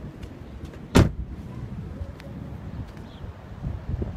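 Low rumble of a slowly moving car heard from inside, with one sharp knock about a second in.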